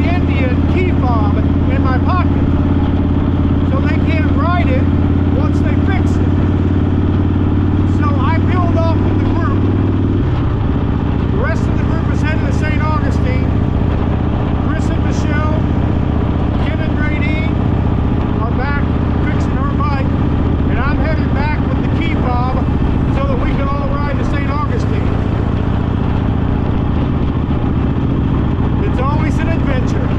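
Motorcycle engine running steadily under way, a loud low drone mixed with rushing wind, that shifts pitch a little about ten seconds in as the speed or gear changes; a man's voice talks over it.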